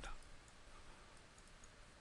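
Near silence: faint steady hiss of room tone, with a couple of faint clicks.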